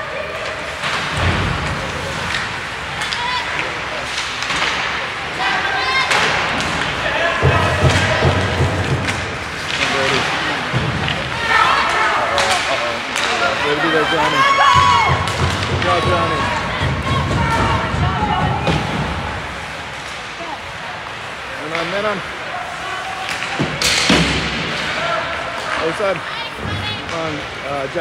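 Ice hockey game sound: repeated thuds and knocks of the puck, sticks and players against the boards and glass, over indistinct voices of players and spectators.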